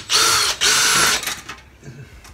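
Cordless drill-driver running in two short bursts of about half a second each, its motor pitch rising and falling with the trigger, backing out screws that hold an old storm door track to the door jamb.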